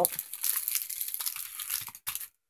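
Clear plastic packaging crinkling and rustling as packs of miniature wooden shutters are handled and set down. It is a continuous crackly rustle with many small ticks, and it stops just after the end.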